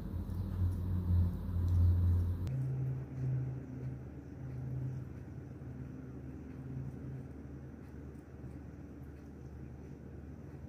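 Low background rumble and hum with no speech. The sound changes abruptly about two and a half seconds in, then carries on quieter and steady.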